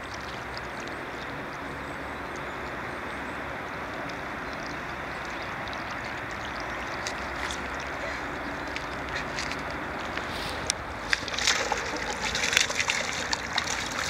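Steady outdoor rush of water and wind noise, then from about eleven seconds in a choppy run of sharp splashes and crackles as a hooked bass thrashes at the surface close to the bank.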